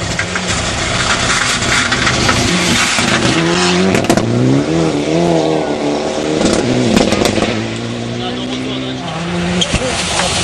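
Rally car engine at full effort on a gravel stage, its pitch rising and falling sharply with throttle and gear changes as the car passes, with a few sharp cracks. Near the end the next car's engine grows louder as it approaches.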